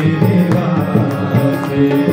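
Harmonium and tabla playing a Shiv bhajan: the harmonium holds steady reedy chords while the tabla keeps up a running pattern of strokes.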